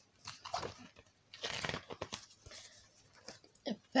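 Pages of a picture book rustling and crackling as one is turned, in a few short rustles with the loudest about one and a half to two seconds in.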